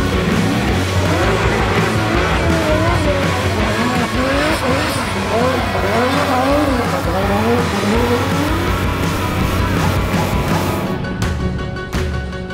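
Drift car engine revving up and down over and over, with tyre squeal, under a music track with a steady bass line. Near the end the car noise drops out and only the music remains.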